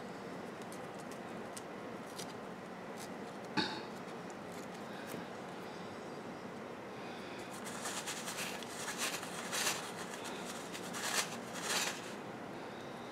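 Faint steady room noise with one short sound about a third of the way in; in the last few seconds, fingers crunching and scratching in a tray of perlite, a quick run of small crackles.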